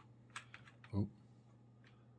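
A few computer keyboard keystrokes, short separate clicks, with a man's brief "ooh" about a second in, over a faint steady low hum.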